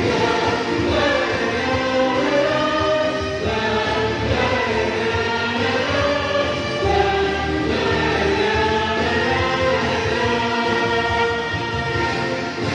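A small vocal group singing a song together, holding long notes over instrumental accompaniment with a steady low bass.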